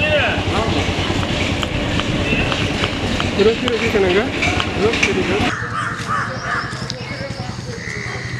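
Crows cawing several times, short arched calls that cluster about four seconds in, over a steady low rumble; the background changes abruptly about five and a half seconds in.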